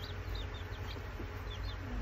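Day-old chicks, Buff Orpingtons and Speckled Sussex among them, peeping: a scatter of short, high peeps that slide downward, several a second, over a low steady hum.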